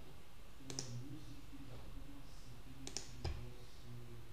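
Computer mouse clicks: a single click about a second in, then a few more in quick succession near the end, over a faint low hum.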